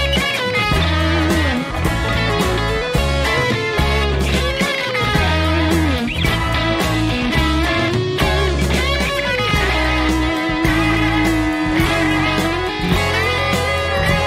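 Electric guitar playing an improvised lead line with string bends and a long note held with vibrato about ten to twelve seconds in, over a rock recording with bass and drums.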